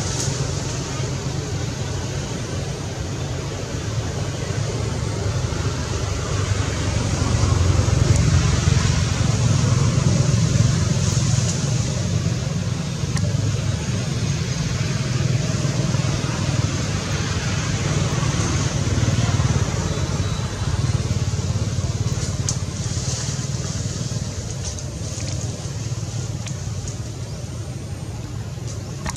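Outdoor background noise: a continuous low rumble that swells to its loudest about eight to twelve seconds in, under a steady hiss, with a few faint clicks near the end.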